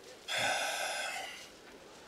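A man lets out one heavy, breathy sigh lasting about a second.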